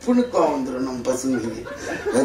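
A man talking into a microphone, chuckling as he speaks.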